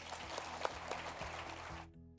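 Audience applauding over a sustained low musical chord. The clapping cuts off suddenly near the end, and the chord carries on alone for a moment.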